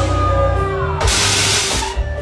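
Live band music played loud over a stage sound system, with a steady bass line and a held note that glides downward in the first half. A dense hiss-like wash covers the second half for under a second.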